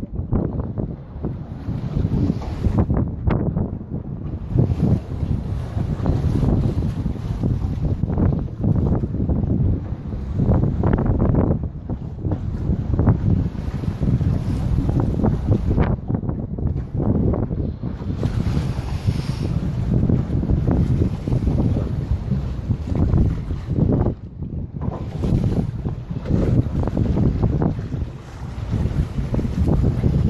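Strong sea wind buffeting the microphone: a loud, gusting low rumble that rises and falls, easing briefly twice, with choppy waves beneath it.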